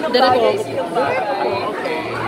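Speech only: people talking over one another in conversation.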